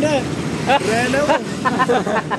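Young men laughing, the voices coming in short broken bursts that quicken near the end.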